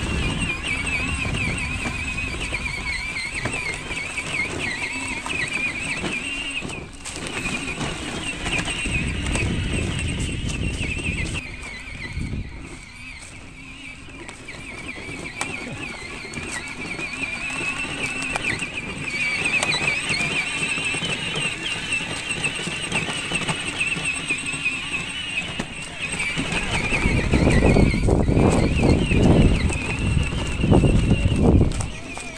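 A Dynacraft Realtree 24V UTV electric ride-on toy driving over grass and leaves, its 24-volt electric drive giving a steady, wavering high whine over a low tyre rumble. The rumble grows louder in the last few seconds.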